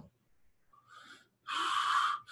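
A man breathing between phrases: a faint breath about a second in, then a louder, drawn-in breath in the last half second.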